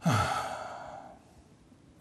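A man sighing: a breathy exhale that opens with a brief falling voice and fades away over about a second.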